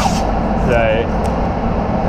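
Steady droning hum of a spray booth's ventilation fans, with a short rip of masking tape pulled off the roll right at the start.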